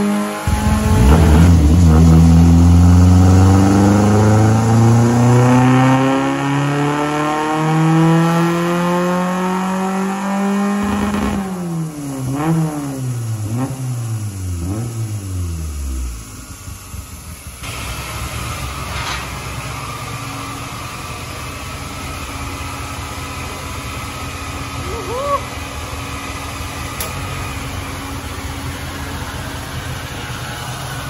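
Fiat Uno 1.6R's naturally aspirated four-cylinder engine making a power pull on a chassis dynamometer, its pitch climbing steadily for about ten seconds. The revs then fall away with a few short blips and settle into a steady idle about sixteen seconds in.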